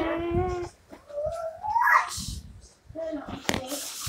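A child's wordless vocalising: a held note, then a rising, whiny squeal about a second in, and a few short sounds near the end.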